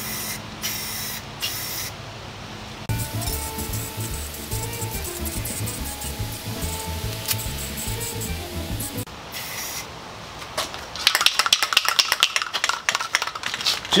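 Aerosol can of Rust-Oleum gloss enamel spray paint hissing in short bursts, with background music over the middle part. Near the end comes a rapid clicking rattle, the mixing ball in the nearly empty can as it is shaken.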